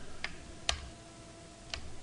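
About three sparse, isolated clicks from working a computer's mouse and keyboard, the sharpest a little under a second in, over a faint room background.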